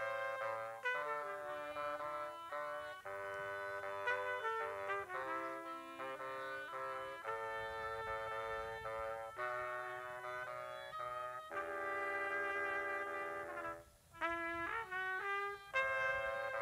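A wind trio of trumpet, clarinet and bassoon playing a piece together in held, chord-like notes. There is a short break about two seconds before the end, after which quicker notes follow.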